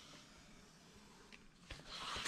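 Near silence: room tone, with one faint tick a little past halfway and faint paper-handling sounds near the end as the scored sheet is taken up to be turned.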